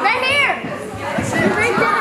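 Many children's voices talking and calling out over one another, with a high rising-and-falling call right at the start.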